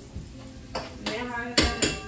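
Two sharp knocks of a kitchen knife on a cutting board near the end, a fifth of a second apart, under quiet talking.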